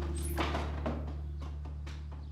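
A woman dropping into a desk chair: a swish and a sharp knock about half a second in, followed by a few light taps and clicks as she settles at the desk, over a low held note of background music that slowly fades.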